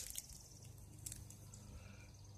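Faint crinkling of a small plastic fly packet being handled in the hands, a few soft crackles over a quiet background.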